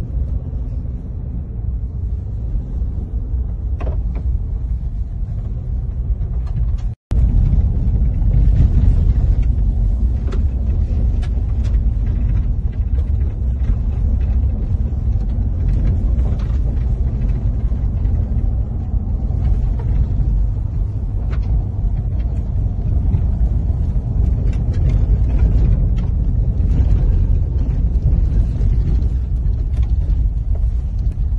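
Road noise inside a moving car's cabin: a steady low rumble of tyres and engine on a rough dirt road, with faint scattered ticks. It cuts out briefly about seven seconds in and comes back slightly louder.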